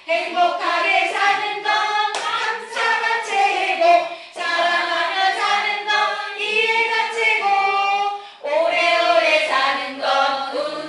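A small group of adults, mostly women, singing together unaccompanied with hand claps, the song breaking briefly between phrases twice.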